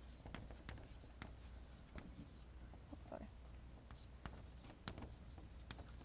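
Chalk writing on a blackboard: a faint, irregular series of short taps and scratches as letters are written.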